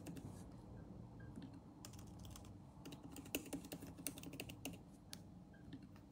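Faint typing on a laptop keyboard: irregular, quick key clicks as numbers are entered.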